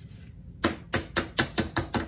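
Cardstock card panel tapped edge-down again and again on a work surface to knock loose glitter off the glue: a quick run of light knocks, about five a second, starting about half a second in.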